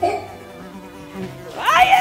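A bee-buzzing sound effect runs steadily under a child's voice: a short 'wee' at the start and a louder, rising 'weee' near the end.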